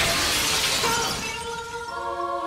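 A glass window shattering as something crashes through it, a sudden crash of breaking panes followed by falling shards that trail off over about a second and a half. Music tones come in about halfway through.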